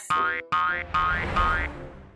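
Playful comedy background music with a cartoon sound effect: a run of quick rising pitch glides, one after another, that fades out near the end.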